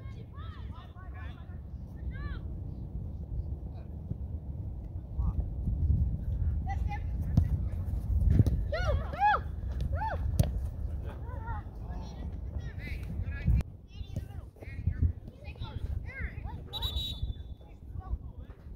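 Youth soccer players and spectators shouting across the field over steady wind rumble on the microphone. There is a sharp kick of the ball about ten seconds in, and a short referee's whistle near the end as the ball goes out of play.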